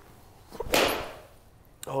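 A full wedge swing with an Edel 54° wedge striking a golf ball off a hitting mat: one sharp strike about two-thirds of a second in, dying away quickly.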